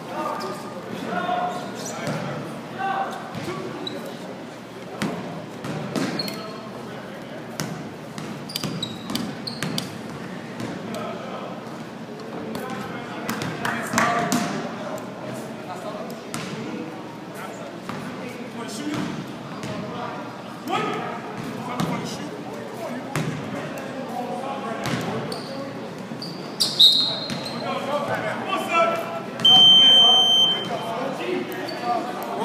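Basketball game in a gym: a ball bouncing on the hardwood court amid players' voices, all echoing around the large hall. A buzzer sounds briefly right at the end.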